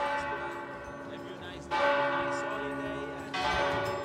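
Church bell struck three times, about a second and a half to two seconds apart, each strike ringing on and fading.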